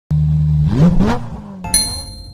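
Intro sound effects: an engine revving up in a quick rising sweep, then a bright chime sounds near the end, the first of a string of repeated dings.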